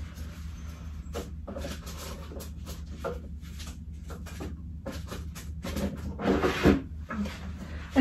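Rummaging among small items and papers: a run of light knocks, clicks and rustles, then a brief grunt-like vocal sound about six seconds in.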